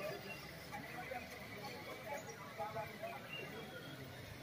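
Faint, distant voices of people talking, over a quiet outdoor background.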